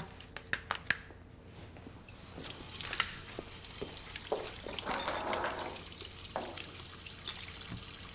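A few light clicks and knocks, then water running from a kitchen tap, growing fuller about halfway through.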